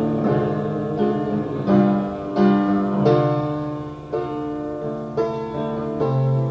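Live music from an audience recording: a string instrument, guitar or piano, plays slow chords, a new one struck about once a second and left to ring, with no singing.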